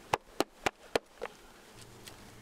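Wooden bee package being shaken and knocked over an open hive to jar the last bees out: five sharp knocks in quick, even succession, the last one fainter.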